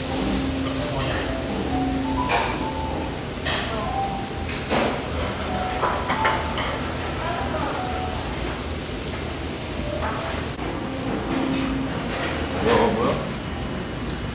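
Busy restaurant kitchen and dining-room sound: indistinct voices, scattered clicks and clinks of dishes and utensils, and background music.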